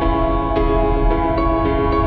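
Calm ambient background music with long held chords, over a steady low rumble of car road noise.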